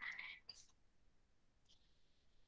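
Near silence: room tone, after the faint breathy tail end of a woman's spoken phrase in the first half second.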